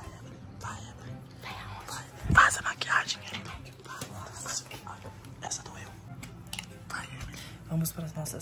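Hushed whispering close to the microphone, with soft handling noises and one sharp knock a little over two seconds in.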